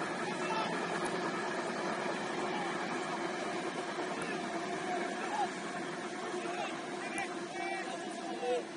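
Short shouts and calls from voices around a football pitch, heard over a steady drone held at a few fixed pitches that starts suddenly as the shot changes.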